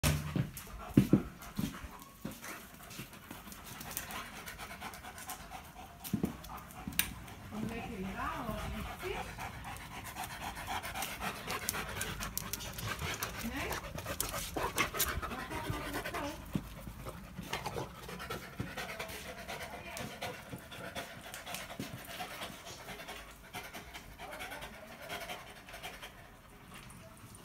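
Dogs panting hard, with a few sharp knocks in the first second and a person's voice at times.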